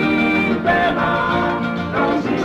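Papua New Guinea stringband music: acoustic guitars playing a song with plucked strings, continuous and steady.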